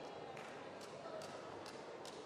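Quiet arena room sound with a handful of soft, short thuds from Muay Thai fighters trading strikes in the ring.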